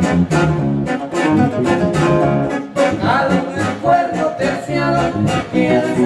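Live band music: guitars strummed to a quick, steady beat of about three strokes a second, with a voice singing over them.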